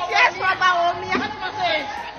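A woman's raised voice, with other people chattering behind her.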